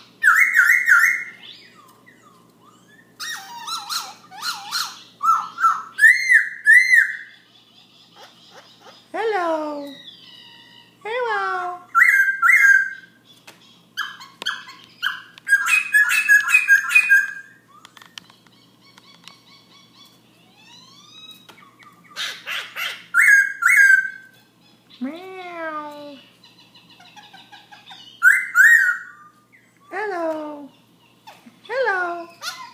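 Black-throated laughingthrush singing a varied song. It gives repeated bursts of clear whistled notes, harsh chattering phrases and several long whistles that fall steeply in pitch, in phrases separated by short pauses.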